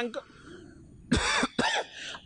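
A man coughs twice into a microphone, clearing his throat between phrases: one short, hard cough about a second in, then a smaller one just after.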